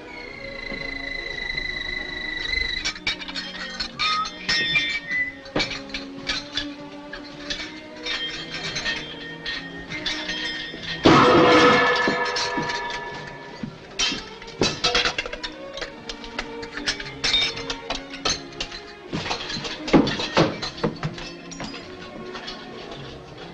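Comic orchestral film score with many short clinks and knocks, and a loud crash about halfway through.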